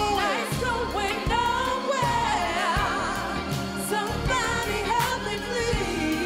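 Live funk band playing with a gospel-style lead vocal in sliding, wavering runs, backed by group singers, with a tambourine shaken in time.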